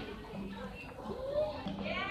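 Indistinct chatter of shoppers' voices, including a child's voice, in a busy shop.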